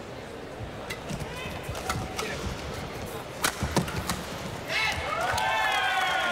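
Badminton rally: racquets strike the shuttlecock in a string of sharp cracks, the hardest pair, a smash, about three and a half seconds in, with shoe squeaks on the court. Voices rise near the end.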